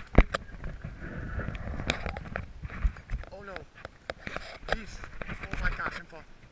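A hooked bass splashing and thrashing at the water surface while it is fought on a spinning rod and reel, with excited voices. A sharp knock just after the start is the loudest sound.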